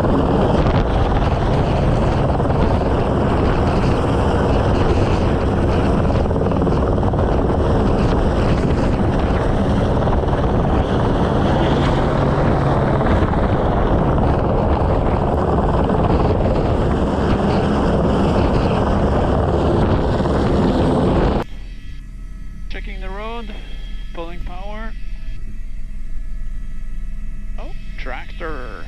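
Airbus H125 helicopter working close overhead on a sling lift: loud, steady rotor and turbine noise. About 21 seconds in, it cuts off abruptly to a much quieter steady cockpit hum with a few short wavering tones.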